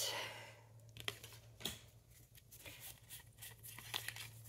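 Pokémon booster pack being handled and opened: a short tearing rustle of the foil wrapper at the start, then a few light clicks and taps as the cards are pulled out and squared up.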